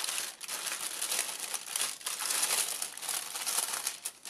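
Tissue paper crinkling and rustling as it is unfolded and pulled open by hand, a continuous run of rustles with a short lull about a third of a second in.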